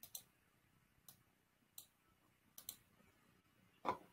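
Faint, sharp clicks over near-silent room tone, about five of them roughly a second apart. The last, near the end, is the loudest.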